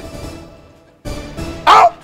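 A dog barks once, loudly, about one and a half seconds in, over background music.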